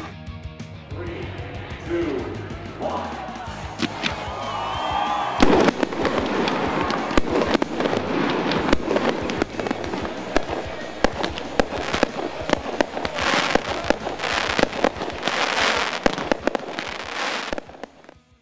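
Fireworks display: fairly quiet for the first five seconds, then a dense run of bangs and crackles, with the thickest crackling near the end before it fades out.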